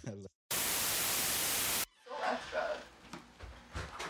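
A burst of static hiss, about a second and a half long, that cuts in and off abruptly between two short drop-outs of dead silence. After it come faint voices and a few light clicks.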